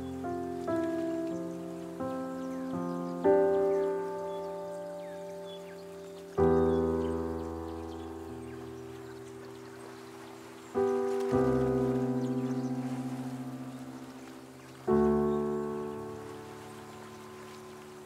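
Solo piano playing slow chords, each struck and left to ring and fade before the next, about eight chords spaced one to four seconds apart.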